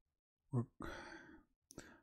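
A man's voice says a single short word, then breathes out audibly. A few faint clicks follow near the end.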